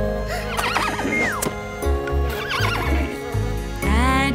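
A horse whinnying twice, in wavering calls, over the backing music of a children's song with a steady bass line.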